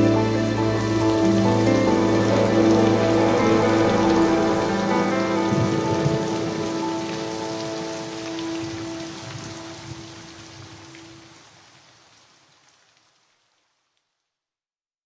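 Fade-out at the end of a romantic ballad: a sustained chord over a rain sound effect, the bass dropping out about halfway, then the last tone and the rain dying away to silence about a second before the end.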